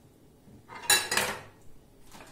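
Metal cutlery clattering against ceramic dishes: two quick clinks about a second in, each with a brief ring.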